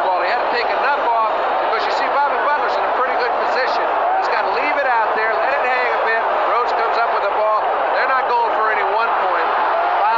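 Voices from a TV football broadcast, with a man speaking over a stadium crowd's steady noise.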